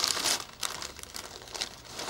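Gift-wrapping paper crinkling and rustling as a wrapped present is unwrapped, in irregular rustles that are loudest at the start.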